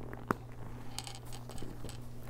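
The flap closure of a quilted leather shoulder bag snaps shut with one sharp click, followed by light handling noise from the leather and its chain strap.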